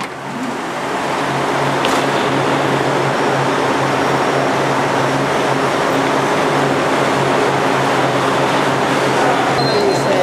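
Motor coaches idling: a steady low engine hum under a wash of noise, growing louder about a second in and then holding.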